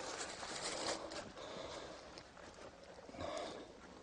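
Faint, quiet breathing and sniffing from men straining to lift a heavy load, over a low haze of background noise.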